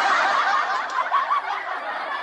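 A group of young men laughing together in a dense burst that slowly dies away.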